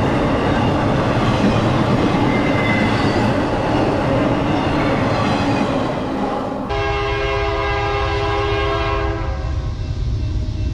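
Intermodal freight cars rolling past with a steady rumble and wheel clatter for the first two-thirds. The sound then changes abruptly to a diesel locomotive horn blowing one long blast of about two and a half seconds from an approaching train, over a low rumble.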